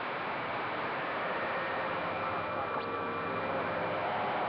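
Steady hiss of band static from a CB radio's receiver on an open channel, with faint steady whistling tones and weak voices buried in the noise.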